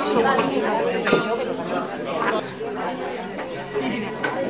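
Several people talking over one another at a dining table: indistinct chatter in a room.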